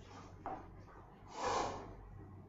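A person breathes out sharply once, near the end, in a noisy burst of about half a second. A fainter sound with a sudden start comes about half a second in.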